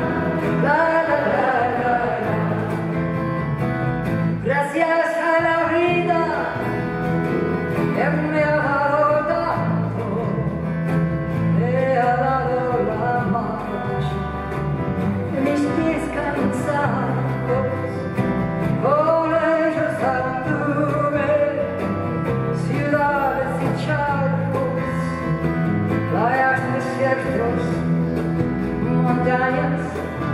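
Acoustic guitar strummed under singing of a slow folk song, performed live.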